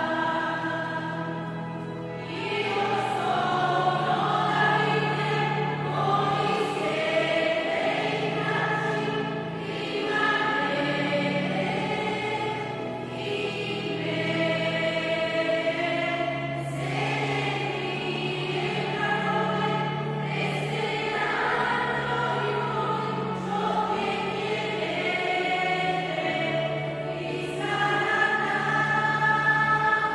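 Church choir singing a slow hymn in long, held notes.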